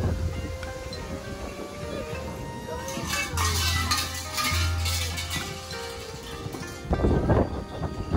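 Large metal shrine bell (suzu) rattling as its rope is shaken, a dense jingling clatter for about two seconds near the middle, over background music.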